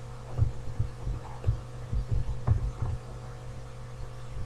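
A run of soft, irregular low thuds from a pen stylus being written with on a tablet, picked up through the desk and microphone over a steady low hum.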